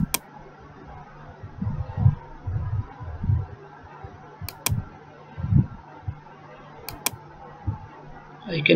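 Computer mouse clicks: one click at the start, then two quick pairs of clicks about four and a half and seven seconds in, over a faint steady hum with low dull bumps in between.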